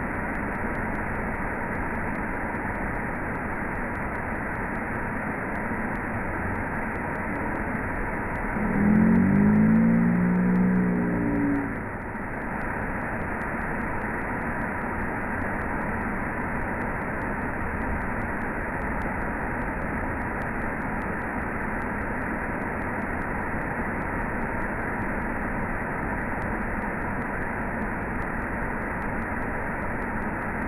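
Steady rush of a waterfall's falling water. About eight seconds in, a louder, drawn-out pitched call rises over it and lasts some three seconds.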